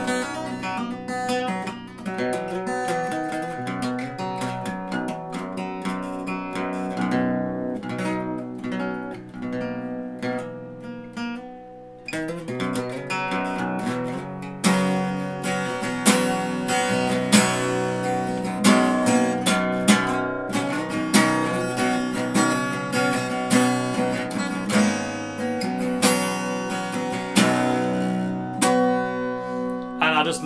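Steel-string dreadnought acoustic guitar, a Korean-made copy of a Martin D28, played in open C tuning. Softer picked notes ring and fade over the first twelve seconds or so, then a louder strummed passage with regular strokes runs to the end.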